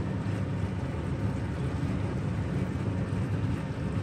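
Steady low rumbling noise with no distinct events.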